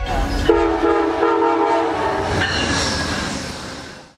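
Horn of an approaching passenger train's cab car, a chord of steady notes starting about half a second in and held for nearly two seconds, over the train's running rumble. The sound fades out near the end.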